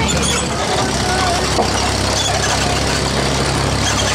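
Tractor engine running steadily at low speed, with faint voices in the background.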